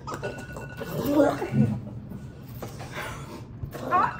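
Several people laughing and making wordless vocal noises while chewing sour lemon wedges.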